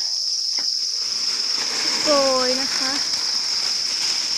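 A dense chorus of farmed crickets trills as one steady, high-pitched band of sound.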